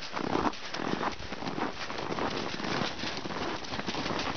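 Hoofbeats of several horses running on packed snow: a continuous, irregular patter of muffled hoof strikes with a crunching rustle.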